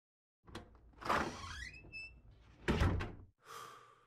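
Animated-logo intro sound effects: a click, then a whoosh with a rising sweep, a heavy hit about two-thirds of the way through, and a last whoosh that fades out on a held tone.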